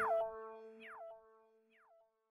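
Closing sound logo: a synthesized tone that glides down in pitch over held notes, repeating as weaker and weaker echoes and dying away about a second in.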